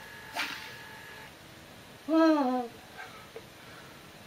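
A man's short wordless vocal sound about two seconds in: a single falling 'hooo' lasting about half a second, after a soft click near the start.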